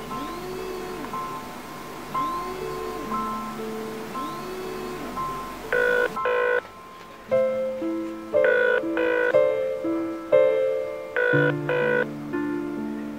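A melodic mobile-phone ringtone plays a short phrase with a swooping tone, repeating three times about two seconds apart. It stops about six seconds in, when piano background music takes over with louder chords.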